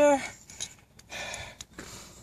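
A woman's breathy exhale about a second in as she catches her breath after skipping rope, with a couple of faint clicks.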